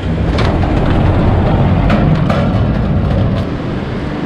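Fast-flowing river rushing through the gorge below a bridge, heard as a steady low rumble mixed with wind on the microphone, with a few light knocks.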